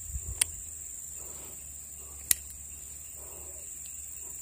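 A steady, high-pitched insect buzz, with two sharp clicks: one near the start and one about two seconds in.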